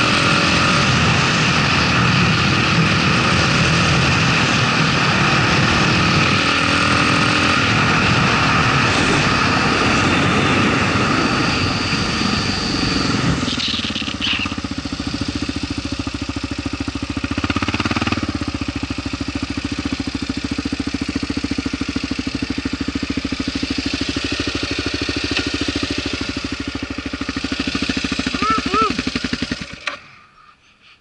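Kawasaki KLR650's single-cylinder four-stroke, fitted with a 42 mm Mikuni flat-slide carburettor, running under way, with wind noise over the microphone. About halfway through, the wind hiss falls away and the engine settles into a lower, steady beat.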